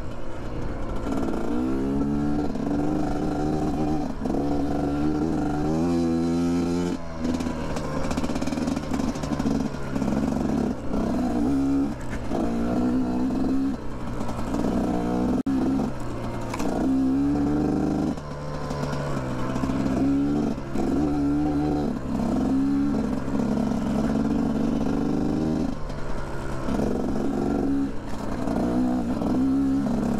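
GPX Moto TSE250R's single-cylinder four-stroke engine riding along a dirt trail. It revs up and falls back over and over, every second or two, as the throttle is rolled on and off.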